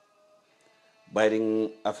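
About a second of near silence with a few faint steady tones, then a man's voice speaking, starting a little over a second in.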